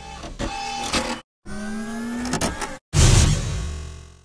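Intro logo sound effects: a short whirring tone that rises slightly in pitch and cuts off, then a loud hit about three seconds in that rings and fades away.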